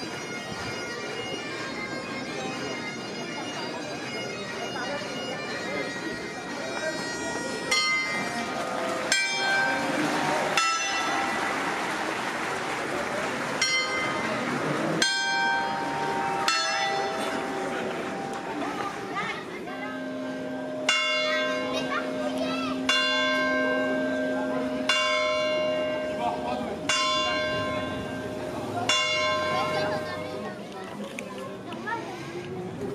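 Church bells tolling, with a stroke every one and a half to two seconds from about eight seconds in, over crowd chatter. A steady drone joins about halfway through.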